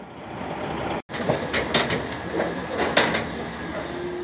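Truck running for about a second. After a break comes the clatter of cattle unloading from a stock trailer: hooves knocking on the metal floor and sides, with several sharp bangs, the loudest near the end.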